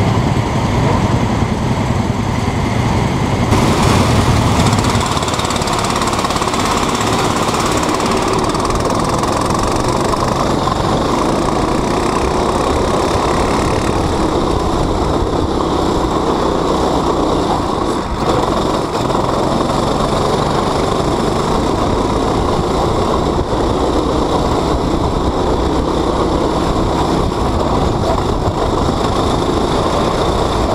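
Go-kart engine running under way, heard on board the kart, a continuous steady drone that grows briefly louder about four seconds in.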